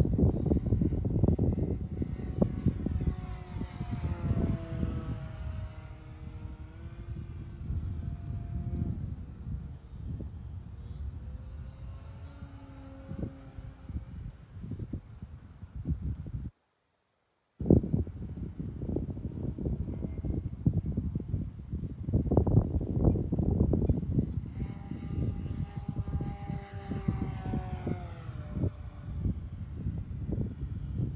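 Electric motor and propeller of a 5S electric Phoenix Spitfire RC model whining as it flies by, the pitch falling on each of two passes, under heavy wind buffeting on the microphone. The sound cuts out completely for about a second midway.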